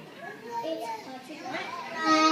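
Young children talking and calling out as they play, several small voices overlapping.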